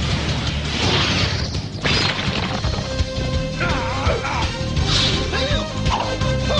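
Cartoon action soundtrack: music runs under sound effects. A swelling energy-blast whoosh ends in a crash just before two seconds in, and another burst comes near five seconds.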